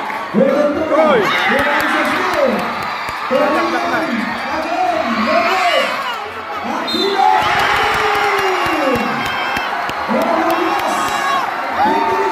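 Basketball crowd shouting and cheering, with many voices calling out at once over a steady crowd noise and a few sharp knocks from the play.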